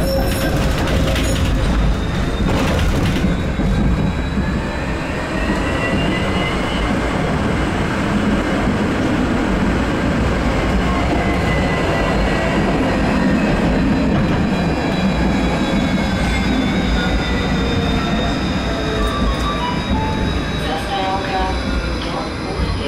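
Ride noise inside a moving electric tram: a steady rumble of wheels on rails, with a faint whine from the traction drive that climbs in pitch as the tram gathers speed and falls as it slows near the end. Some short clatters in the first few seconds.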